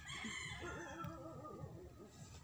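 A long, drawn-out animal call, falling in pitch and fading out near the end.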